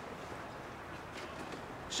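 Quiet pause with only a faint, steady background hiss of room tone; no distinct sound stands out.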